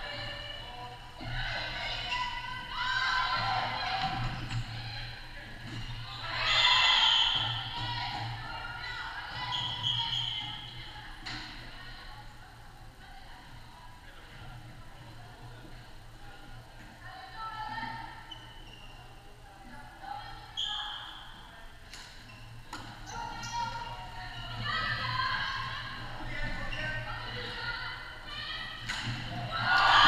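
Players' shouts echoing across a large sports hall during a floorball game, coming and going in bursts, with a few sharp knocks of stick and ball over a steady low hum.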